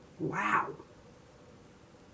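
A single short cry, rising then falling in pitch, lasting about half a second.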